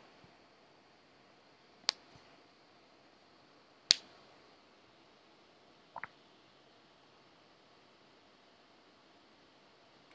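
Three single computer-mouse clicks about two seconds apart, the middle one the loudest, over a faint steady hiss.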